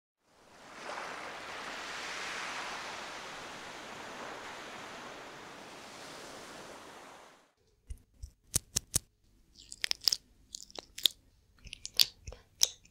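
A steady rushing noise fades in and runs for about seven seconds, then cuts off. A run of sharp, crisp clicks and crackles follows, close-miked ASMR trigger sounds.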